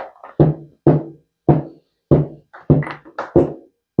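A run of about eight evenly spaced percussive knocks, a little under two a second, each a short hollow hit with a brief pitched ring, like a wood-block or drum-machine beat.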